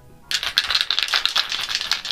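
Small plastic poster-paint jars rattling and clicking against each other in cupped hands: a dense run of quick clicks that starts about a third of a second in.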